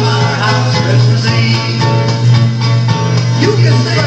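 A record playing on a Seeburg Select-O-Matic jukebox: a song with singing and guitar, with a steady low hum underneath.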